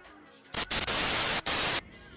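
A burst of loud TV-style static hiss that starts abruptly half a second in, drops out for a split second, and then cuts off sharply: an editing transition effect.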